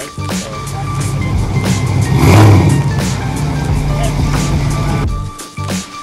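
Car engine running hard on a chassis dyno, loudest about two and a half seconds in and dropping away near the end, with background music with a steady beat playing over it.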